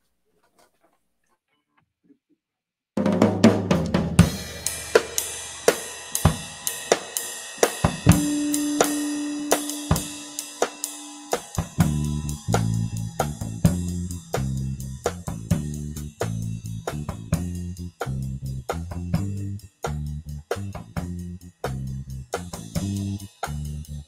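A live rock trio starts up after a few seconds of near silence: the drum kit comes in abruptly with snare, kick and cymbals in a steady beat, then electric bass and electric guitar join with a pulsing bass line.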